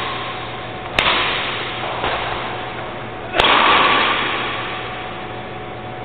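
Badminton racket striking a shuttlecock twice with sharp cracks, once about a second in and again, louder, past three seconds, each ringing on in the hall's echo.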